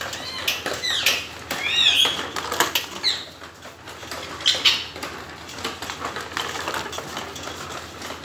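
Pet green parakeets squawking several times in the first few seconds, over the clicking rattle of a child's plastic ride-on toy rolling across a tiled floor.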